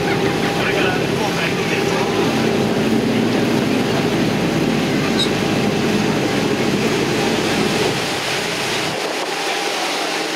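Sightseeing boat's engine running steadily under way, a constant hum with water noise. Its deepest rumble drops away near the end.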